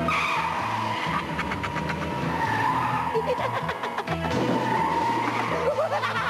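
Car tyres squealing in a long skid, a wavering high squeal that breaks off briefly about four seconds in and then starts again, over background music.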